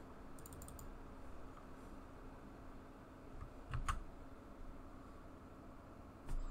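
A few faint computer keyboard and mouse clicks, with a louder pair of key clicks just under four seconds in, over a faint steady hum.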